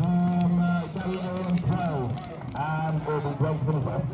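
A man's voice talking, with a long drawn-out word at the start; the words are not clear.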